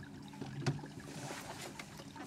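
Boat motor running with a steady low hum, with scattered light ticks and one sharper tap about two-thirds of a second in.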